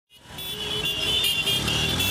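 Several motorcycle engines running as a procession of boda boda motorcycles passes close by. The sound fades in just after the start, with a steady high-pitched tone over the engine noise.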